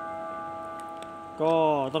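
A sustained chord of bell-like chime tones, ringing steadily and slowly fading. A man's voice comes in about one and a half seconds in.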